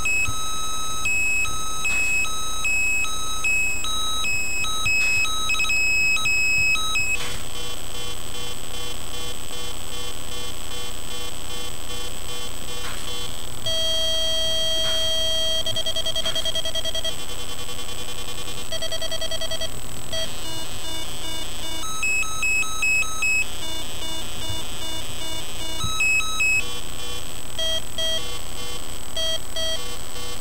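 Breadboard CMOS logic-chip 1-bit synth with an 8-step rhythm sequencer, playing buzzy square-wave beeps through a small speaker in a repeating pattern. The pitches and rhythm change abruptly several times as jumper wires on the breadboard are moved.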